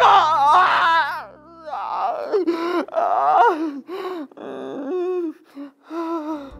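A man's voice in a string of wordless, drawn-out wails, the pitch wavering up and down, in a theatrical lament. Background music underneath stops about two seconds in.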